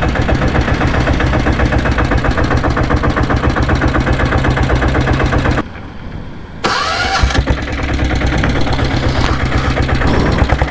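Royal Enfield diesel Bullet's single-cylinder diesel engine running under way, its fast firing pulses steady and loud. A little past halfway the sound drops for about a second as the throttle eases, then picks up again with a short rising whine.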